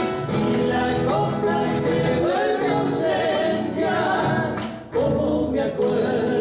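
Argentine folk group performing live: male voices singing over acoustic guitar, with a brief break in the sound just before five seconds.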